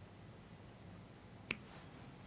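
Quiet room tone broken by one short, sharp click about one and a half seconds in, from fly-tying scissors being handled just before trimming.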